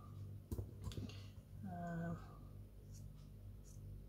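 A few light clicks and taps from small craft items and tools being handled on a tabletop, with a brief hummed vocal sound from a woman about halfway through. A faint steady low hum runs underneath.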